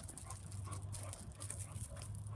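A dog panting in quick, even breaths.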